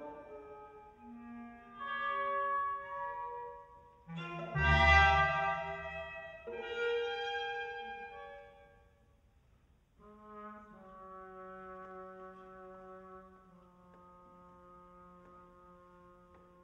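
Contemporary chamber ensemble music: overlapping held notes, with a loud low chord about four and a half seconds in. After a brief near-silence around the ninth second, soft sustained notes fade away.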